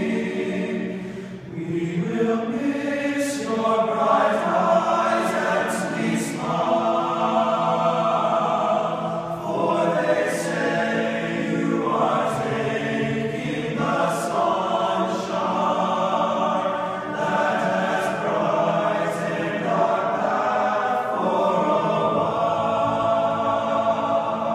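A choir singing slow, sustained chords in long phrases.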